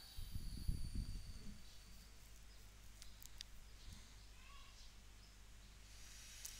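Quiet background noise with a steady low hum. There is a brief low rumble in the first second and a few faint clicks about three seconds in.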